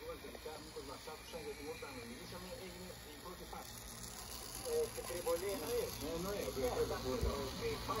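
Indistinct conversation of voices in the background, growing louder in the second half, over a faint steady low hum.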